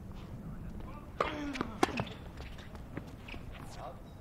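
Tennis ball struck hard by a racket with a short grunt from the player about a second in, followed by more sharp ball impacts; the loudest comes just under two seconds in. Faint voices are heard in the background.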